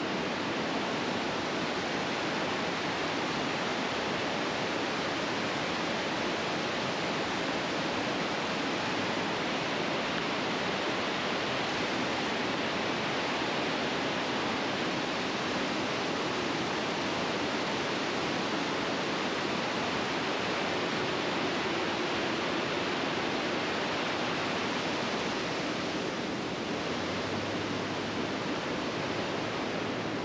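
Steady rush of water pouring over a river dam's waterfall, an even, unbroken noise of falling water.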